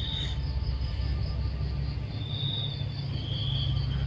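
Insects chirring outdoors in short high-pitched spells that come and go a few times, over a steady low hum.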